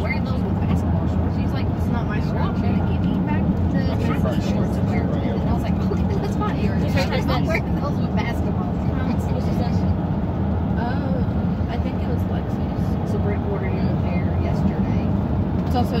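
Steady low rumble of road and engine noise inside a moving car's cabin, with voices talking faintly underneath.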